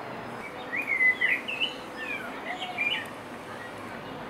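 A songbird singing a burst of quick chirps and short warbled notes, starting about a second in and stopping about a second before the end, over a steady outdoor background hiss.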